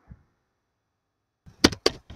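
Computer keyboard keys clicking as a few letters are typed: a quick run of sharp taps starting about a second and a half in.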